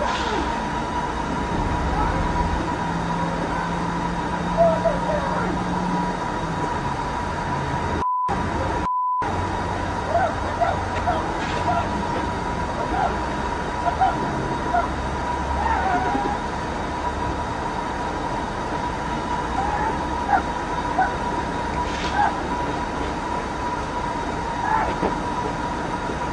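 Steady background noise with a constant high whine, cutting out completely twice for a moment about eight and nine seconds in, with faint scattered voice fragments.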